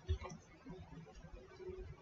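Hands working at a tabletop: a dull knock just at the start, then faint handling noises, with a metal bracelet knocking against the table.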